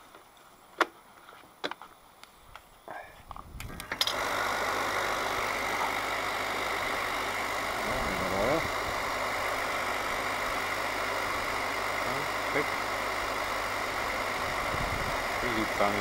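Riello-type oil burner of a diesel space heater starting up: a few sharp clicks, then at about four seconds the burner's fan motor and oil pump start abruptly and run with a steady whirring hum. The oil solenoid valve never clicks open, so the burner does not fire. The solenoid is getting too little voltage, an electrical fault in the control circuit.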